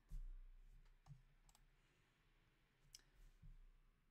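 Near silence with a few faint clicks of a computer mouse as the code is scrolled, after a low thump at the very start.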